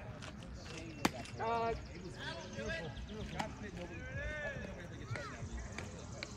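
Players' shouted calls and chatter across an open softball field, with one sharp smack about a second in as the pitch reaches the plate.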